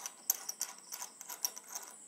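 A mount being twisted and tightened onto the tip of a scissor-arm stand: a quick, irregular run of small ratchet-like clicks that stops just before the end.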